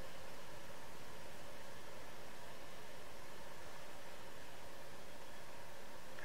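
Steady background hiss of room tone, with no distinct sound standing out.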